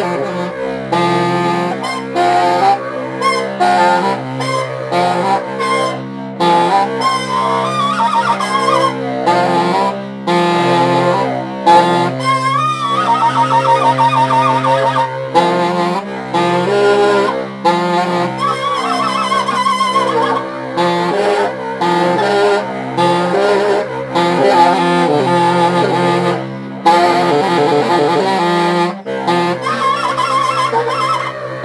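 A baritone saxophone and a tenor saxophone playing together live. Low held notes sit under shorter, shifting higher lines, with a fast wavering figure about halfway through.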